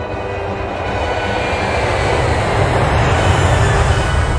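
A rushing, rumbling noise that swells steadily louder and peaks near the end, heavy in the bass, laid over faint music.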